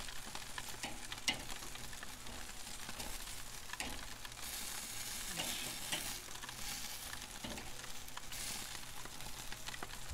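Chicken wings and bacon-wrapped jalapeño poppers sizzling on the grate of a charcoal Weber kettle grill as they are turned with metal tongs. The sizzle swells a few times, and there are occasional short clicks of the tongs on the grate.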